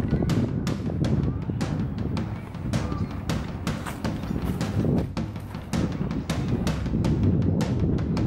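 Footsteps crunching on dry ground and leaf litter, a quick uneven run of crackling steps, over a steady rumble of wind on the microphone.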